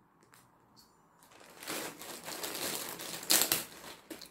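Clear plastic packaging around a pack of yarn balls crinkling as it is handled, starting about a second and a half in, with a louder rustle near the end.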